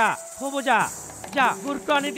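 A man speaking in a strongly rising and falling voice, over a steady, high, insect-like chirring in the background.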